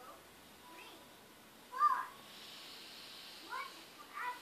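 Short high-pitched vocal calls: a loud one just before two seconds in and a fainter one near the end.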